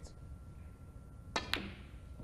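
Snooker cue tip striking the cue ball, then the sharp click of the cue ball hitting an object ball about a fifth of a second later.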